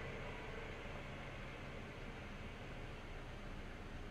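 Faint steady hiss with a low hum underneath and no distinct sound events: quiet room tone.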